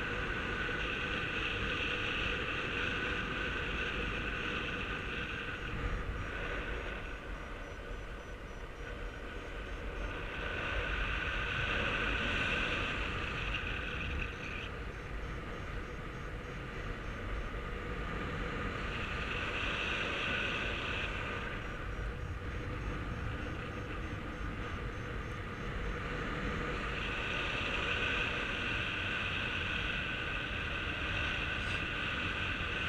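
Airflow rushing over the camera microphone of a paraglider in flight. A steady high tone comes and goes over it in stretches of a few seconds.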